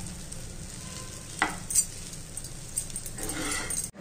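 Spatula stirring and tossing chowmein noodles in a frying pan, with a light sizzle and two sharp taps of the spatula on the pan about a second and a half in.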